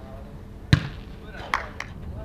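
A football kicked hard once, a sharp thud about three-quarters of a second in, followed by two lighter knocks of the ball and a brief shout from a player.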